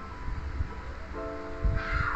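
Background music: held chords that come in about a second in, with a low bass thump near the end.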